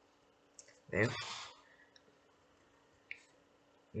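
A single spoken word, "There," about a second in, with a faint click just before it and another about three seconds in, over quiet room tone.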